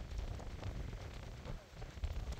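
Wind buffeting the microphone in gusts: a low, uneven rumble that eases briefly near the end.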